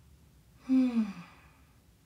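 A woman's voiced sigh, a little under a second in, breathy and falling in pitch over about half a second.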